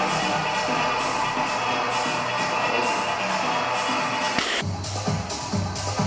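Background electronic music with a steady beat; about four and a half seconds in it shifts to a deeper section with a pulsing bass.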